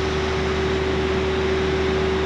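Palm oil mill machinery running steadily: the cracked-mixture bucket elevator and its conveyor, which carry cracked nuts and shells. The sound is an even rushing noise with a constant hum and one steady tone, with no changes.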